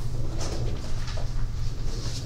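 A steady low hum with scattered faint clicks and rustles: room noise.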